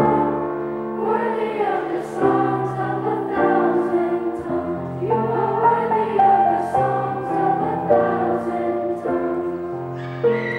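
A children's choir singing a worship song together, with instrumental accompaniment under the voices.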